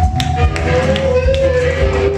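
Live instrumental rock band playing: drums and bass under long held notes that step down in pitch, one note giving way to a lower one about half a second in and another near the end.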